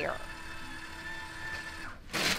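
Automatic paper towel dispenser's motor running steadily as it feeds out a towel, then stopping shortly before the end.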